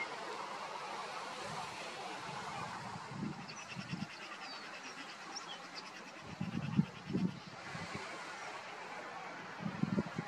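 Outdoor ambience: a steady rush of noise with faint high bird chirps around the middle, and several low bumps about three, seven and ten seconds in.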